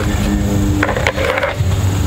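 Scuffing and two short knocks about a second in as plastic skeleton hands are handled and pushed into sand around a wooden pallet, over a low steady hum.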